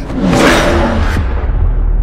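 Action-film soundtrack: a loud whoosh sound effect that swells and fades within the first second or so, over a steady low drone of background score.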